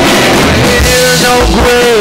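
Live rock band playing loudly: an electric guitar being strummed over a drum kit, with held notes that slide in pitch through the second half.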